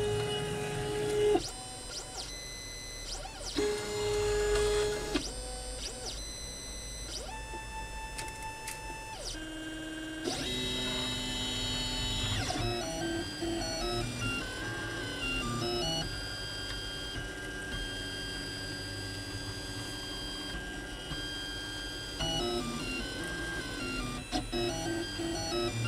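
Printrbot Simple Metal 3D printer printing: its stepper motors whine in steady tones that jump to a new pitch with each move, holding for a second or so at a time and in places switching quickly back and forth in a repeating pattern.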